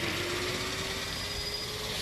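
A vehicle engine running in steady outdoor noise, its faint hum slowly rising in pitch.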